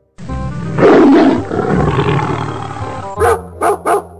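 A loud animal roar, dubbed in as a sound effect, swelling about a second in and fading away. Three short sharp bursts follow near the end.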